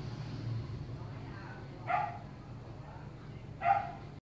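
A small dog yapping twice, two short high barks about two seconds apart, the second louder.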